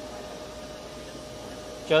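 Steady background hum and hiss of a busy exhibition hall, with one faint steady tone running through it and no distinct knocks or clicks. A man's voice begins right at the end.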